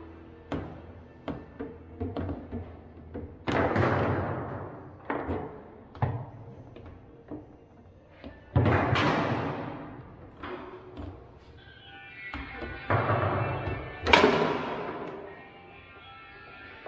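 Table football being played: sharp knocks of the ball against the plastic men and the table's walls, with three louder, longer stretches of noise, over background music.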